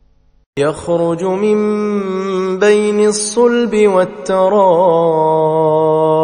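A man chanting a Quran verse in Arabic in slow, melodic tajweed style, with long held notes and a wavering ornamented run past the middle. The voice comes in about half a second in.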